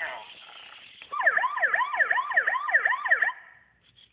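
Police-style siren yelping, its pitch sweeping up and down about two or three times a second. It starts about a second in and stops shortly before the end.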